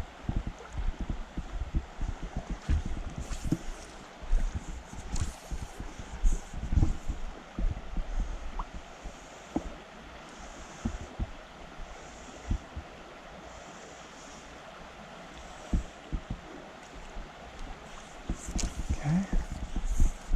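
Shallow stream running over stones, with gusts of wind rumbling on the microphone.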